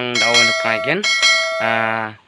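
Notification-bell chime sound effect from a subscribe-button animation, ringing twice about a second apart, marking the channel's bell being switched on. A man talks over it.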